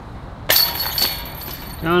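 A putted disc strikes the metal chains of a disc golf basket about half a second in, setting them jangling and ringing, with a second clink about a second in as the disc drops into the basket.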